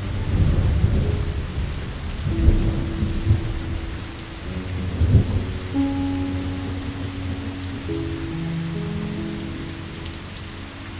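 Steady rain, with a roll of thunder over the first half that swells and fades out about five seconds in, under soft music of long held notes.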